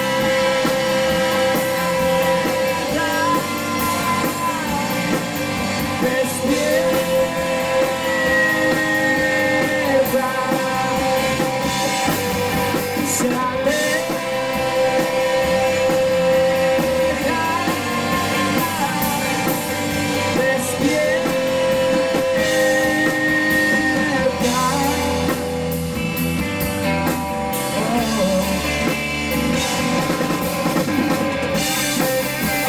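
Live rock band playing: electric guitar, electric bass and drum kit together at a steady loud level, with long held notes.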